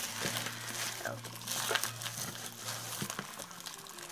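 Bubble wrap and plastic packaging crinkling and rustling under hands, in small irregular crackles over a faint steady low hum.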